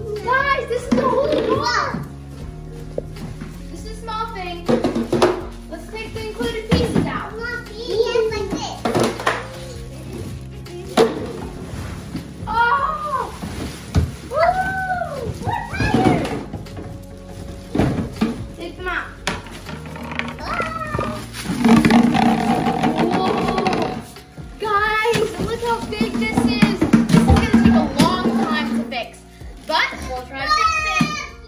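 Children's voices and exclamations over a steady background music track, with scattered knocks and rustles of a cardboard box and plastic wrap being handled.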